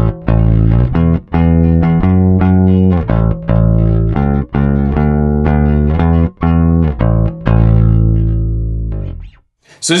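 Fender Jazz Bass played with a pick on its neck pickup alone: a run of picked notes, each with a sharp attack, ending on a long held note that cuts off near the end. The tone is bassy with a sub-bass low end and a defined mid-range.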